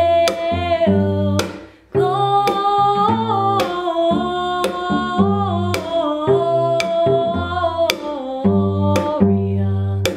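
A woman singing a Christmas carol, accompanying herself on plucked cello with percussive taps on the instrument. The music stops for a moment a little under two seconds in, then carries on.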